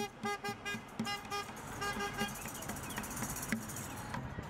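A vehicle horn tooting a rapid rhythmic run of short blasts, all on one pitch, which stops a little over two seconds in.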